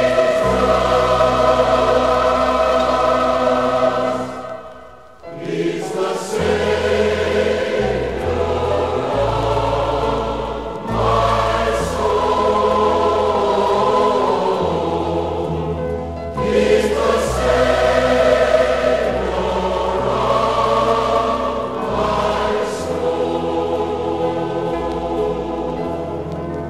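A choir singing a gospel song in held chords over a low accompaniment whose bass notes step from chord to chord. The sound dips briefly about five seconds in, then the singing resumes.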